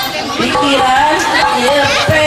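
A woman chanting a melodic devotional song into a microphone, her amplified voice holding long, wavering notes.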